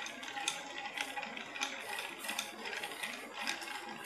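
Ice cubes clinking and rattling in a glass as a cocktail is stirred over lots of ice, giving irregular light clicks about two a second.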